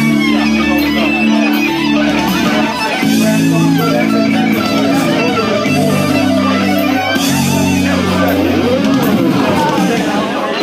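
Live instrumental on an amplified electric bass and electric guitar: sustained low bass notes changing every second or so under bending, wavering lead guitar lines.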